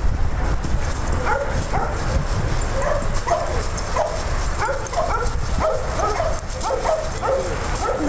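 Dogs in rough play, sounding a quick string of short, high-pitched yips and play-barks, roughly two a second, starting about a second in, over a steady low rumble.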